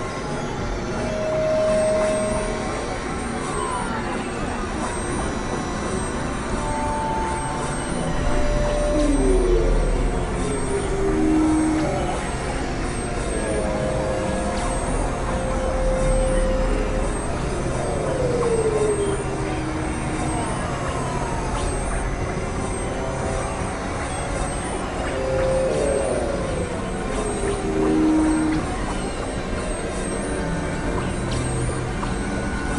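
Experimental electronic noise music made on synthesizers: a dense hissing, rumbling noise bed with short held tones and repeated falling pitch glides scattered through it, and a deeper rumble swelling twice.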